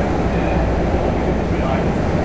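Steady rumble and rushing noise of a moving passenger train, heard from inside the car while it runs at speed.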